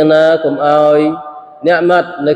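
A man reciting Qur'anic verses in Arabic in a melodic chant, drawing out each syllable on a steady pitch. There is a short break past the middle before the next phrase.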